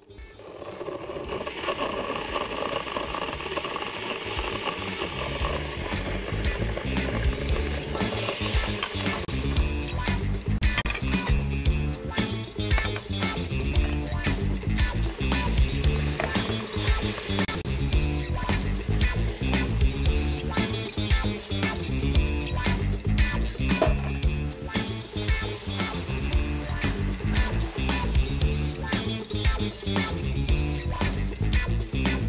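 Electric countertop blender running, blending bananas, dates, honey and iced milk into a smoothie, mixed under background music with a steady beat that comes to the fore after about eight seconds.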